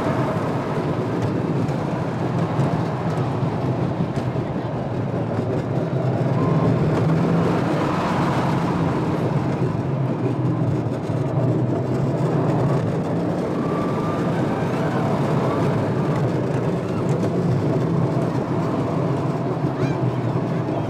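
Roller coaster train running along its track, heard from a rider's seat: a loud, steady rumble of the wheels on the rails.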